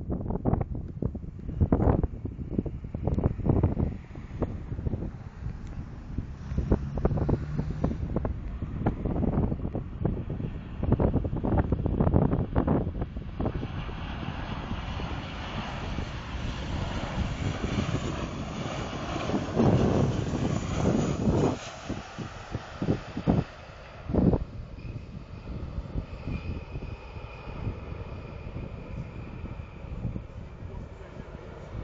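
Jet engines of a Caribbean Airlines Boeing 737-800 on landing approach: a broad rushing engine noise swells through the middle and then fades, leaving a faint high whine near the end. The first part is choppy with wind buffeting the microphone.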